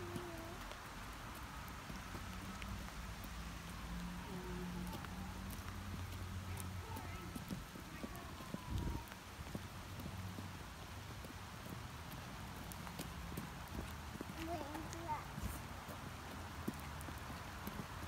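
Small rubber rain boots stepping on wet asphalt over a steady low outdoor hum, with faint voice sounds now and then and one dull thump about halfway through.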